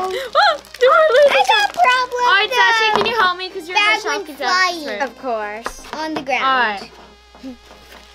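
Girls' wordless vocalising: high, sliding and wavering squeals and hums, dying away near the end.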